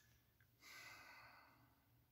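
A faint sigh: one soft breath out starting about half a second in and fading over about a second.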